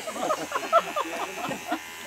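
Corded electric hair clippers running steadily as they shave a man's head, under quiet chatter.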